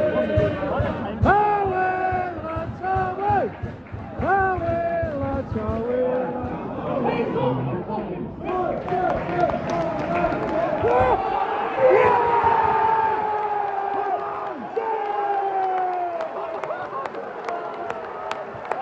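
Football supporters singing a chant in the stand: short repeated sung phrases, then long held notes that slide downward.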